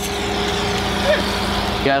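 Hyster forklift engine running, a steady, even hum.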